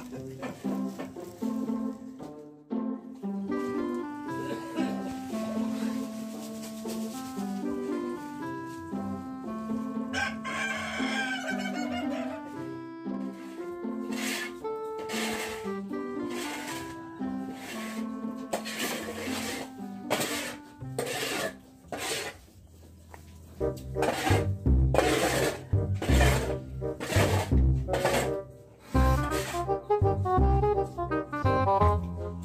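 Background music with a stepping melody, joined by a heavy regular beat about three-quarters of the way through. A rooster crows once, for about two seconds, about ten seconds in.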